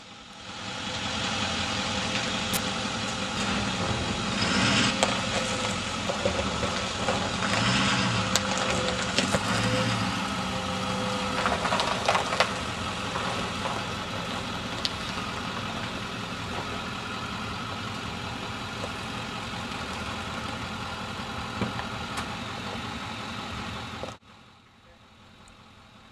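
A pickup-based roll-off bin truck's engine running steadily, under a constant wash of outdoor noise. The sound cuts off sharply about two seconds before the end.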